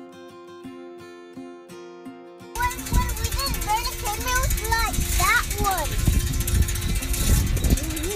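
Soft plucked guitar music, then about two and a half seconds in a sudden change to a loud low rumble of wind buffeting the microphone while riding a bicycle, with a child's high voice over it.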